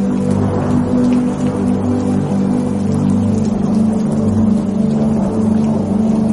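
Ambient music of sustained low chords held steady, with an even rushing noise alongside.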